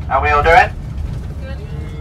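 Steady low rumble of a coach bus's engine heard inside the passenger cabin, with a loud voice calling out for about half a second at the start and quieter voices after the first second.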